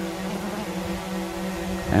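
DJI Mavic 2 Pro quadcopter's propellers running steadily as the drone hovers and backs away under Active Track: an even, multi-pitched hum.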